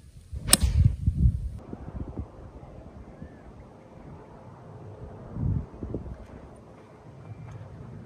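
A golf club strikes the ball off the tee, a single sharp click about half a second in. Wind buffets the microphone throughout.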